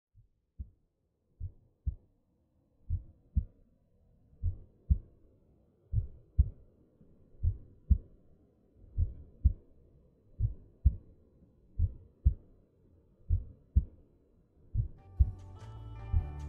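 A slow heartbeat: paired low thumps about every second and a half, faint at first and growing louder over the first few seconds. Near the end, music with sustained notes comes in over it.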